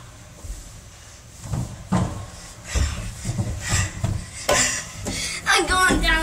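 Irregular low knocks and rubbing of someone clambering through a plastic playground play structure while holding the camera, with a sharper knock about four and a half seconds in.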